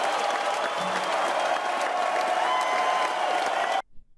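Audience applauding, a dense steady clapping that cuts off suddenly just before the end.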